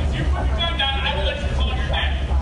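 Raw cell-phone audio from a large indoor hall: a steady low rumble with a voice speaking from about half a second in to near the end.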